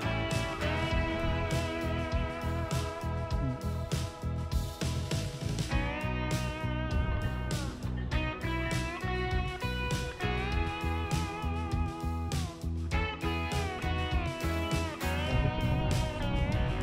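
Background music track led by guitar, with sliding notes over a steady beat.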